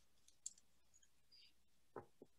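Near silence over a conference call, with a faint short click about half a second in and another right at the end.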